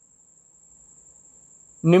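A faint, steady high-pitched tone with a little low hiss, in a pause between speech; a man's voice starts near the end.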